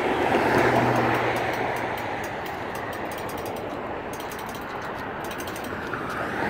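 A road vehicle passing, its tyre and engine noise swelling over the first second and fading away, with a low engine hum in the first two seconds.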